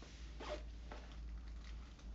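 A couple of short rasping rustles close to the microphone, the first and loudest about half a second in, the handling noise of someone fiddling with something just out of shot.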